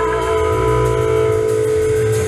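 Live rock band of two electric guitars, electric bass and drum kit playing loudly. Long held guitar notes ring steadily over a pulsing bass line.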